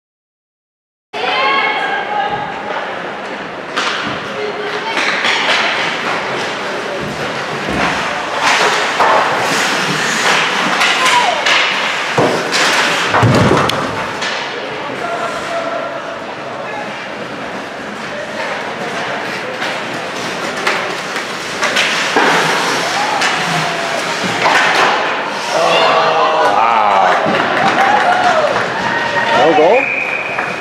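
Ice hockey play: repeated sharp knocks and thuds of sticks, puck and boards, with indistinct shouting from players and onlookers. The sound starts abruptly about a second in.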